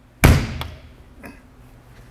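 A poly-lined metal compartment door on a fire truck's body slammed shut: one sharp slam about a quarter second in, ringing away over half a second, followed by a couple of faint clicks.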